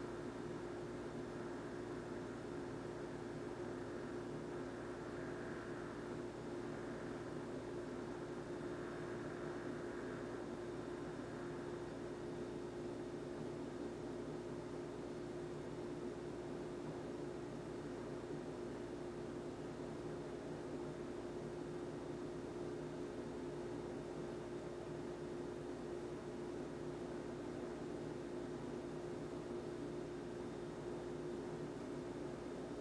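A steady hum with one constant mid-pitched tone, under an even faint hiss.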